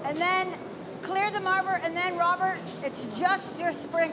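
Speech: a woman talking in short phrases, in a room with a steady background hum.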